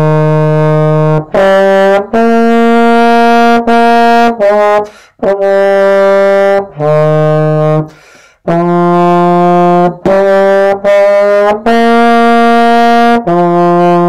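Solo trombone playing a slow line of sustained notes, each held a second or more, with two short breaks for breath about five and eight seconds in.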